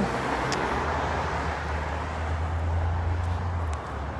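Street traffic on a city road: cars passing, with a steady low rumble from about a second in until just before the end.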